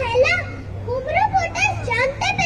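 Children's voices reciting verse in Bengali, with a steady low hum underneath.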